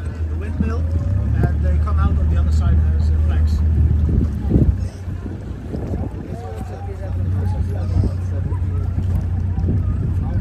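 A low steady engine drone, louder for the first four seconds or so and then easing, with people's voices talking in the background.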